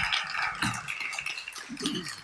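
Audience applause dying away in an auditorium, followed by faint murmuring and scattered small knocks and rustles.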